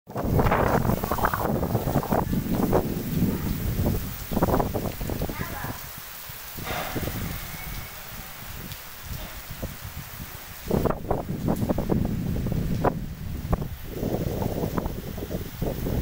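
Heavy rain hissing steadily, with gusts of wind buffeting the microphone in irregular loud rumbling bursts. The gusts ease off for a few seconds in the middle.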